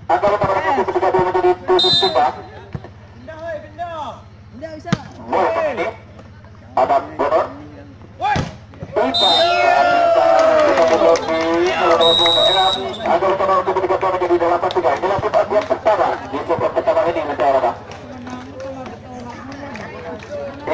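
Men's voices shouting and calling around a sand volleyball court, with a few sharp ball strikes. A referee's whistle sounds briefly about two seconds in and again with a longer blast around twelve seconds.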